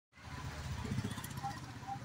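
A motor vehicle's engine running steadily on the street, loudest about a second in, with indistinct voices.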